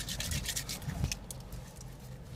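Faint rustling and rubbing from a person shifting and moving his hands in a car seat, with a few light ticks.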